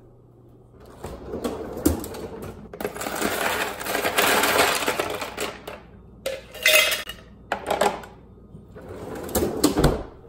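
A freezer drawer slides open, and ice cubes clatter as they are scooped from the bin into a tumbler, in a long rattling spell and then a shorter one. The drawer is pushed shut with a thump near the end.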